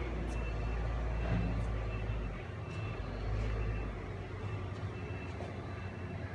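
A steady low rumble of background noise with a few faint clicks and a faint high tone that comes and goes.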